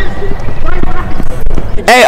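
Wind rumbling on the microphone over quick, even running footfalls on a rubber track, with faint children's shouting. Near the end a boy's voice cuts in loud and close.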